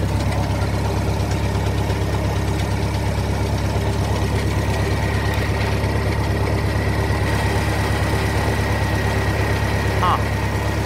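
1956 Farmall Cub's four-cylinder engine running steadily at idle. A thin high whine comes in about halfway through.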